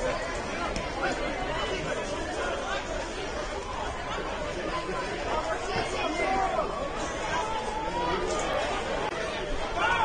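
Indistinct chatter of several voices, players and spectators talking and calling over the steady background noise of a sparsely attended soccer stadium.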